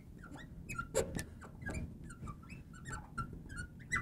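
Marker tip squeaking across a glass lightboard as a line of handwriting is written: a run of short, high squeaks, one for each pen stroke.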